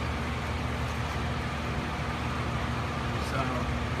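A steady low machine hum that holds unchanged throughout.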